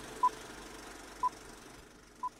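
Countdown timer beeping: two short, high, pure beeps, one second apart, one for each number as it counts down.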